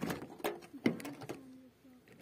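Suzuki sedan's driver door being unlocked with a key and opened: a few sharp clicks and clunks of the lock and latch, the loudest a little under a second in.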